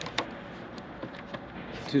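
Power plug pushed into an AC outlet on a Bluetti AC200P power station: two short clicks right at the start, then only a low steady background.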